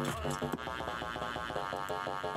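Electronic track playing back from the sequencer, led by a sampled bass patch in Kontakt: a dense, buzzy pitched bass texture pulsing quickly and steadily.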